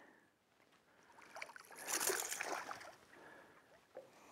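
A hooked smallmouth bass splashing at the surface beside the boat: a short, fairly quiet burst of splashing that starts about a second in and dies away after a second and a half.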